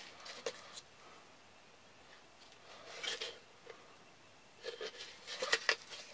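A Kydex tin holder being handled, the stiff plastic rubbing and scraping, then a quick run of sharp clicks and scrapes near the end as a metal tin is worked into the tight holder.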